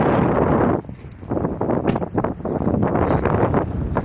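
Wind buffeting a phone's microphone, a loud low rumble with short rustling knocks from handling; it drops away briefly about a second in, then returns.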